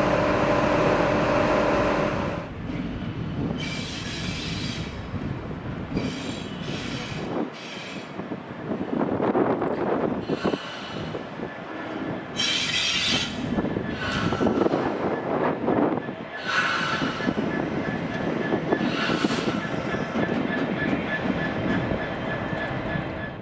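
A diesel train running on the rails. A steady engine tone is heard for about the first two seconds. After that comes a rumble of wheels on track, broken by five high-pitched squeals spread through the rest of the clip.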